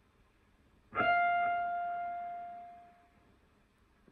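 A single high note picked on a clean electric guitar about a second in, ringing and fading out over about two seconds.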